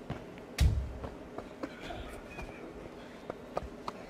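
A single dull thump about half a second in, then a quiet background with a few faint clicks.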